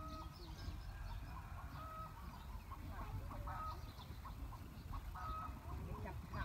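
Chickens clucking now and then, a few short calls, over a low steady rumble.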